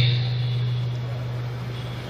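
A single low, steady hum over the public-address loudspeakers, fading slowly, with a faint hiss of the venue behind it.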